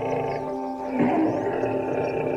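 Calm ambient music of sustained tones, with a short lion grunt about a second in.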